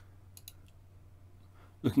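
Computer mouse clicking: one sharp click at the start, then a few light clicks about half a second in.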